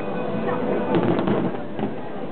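Fireworks going off, with a cluster of sharp pops about a second in, over voices.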